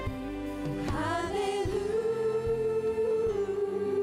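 A woman sings a gospel worship song over live band accompaniment, sliding up into a long held note about a second in.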